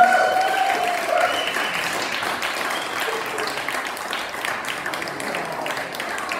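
Audience applauding, a dense, steady clatter of clapping, with a held note from the song dying away in the first second or so.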